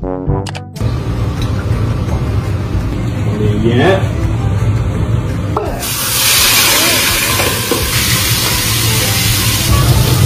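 Shrimp frying in hot oil in a nonstick pan: a loud, steady sizzle starts suddenly about six seconds in and keeps on.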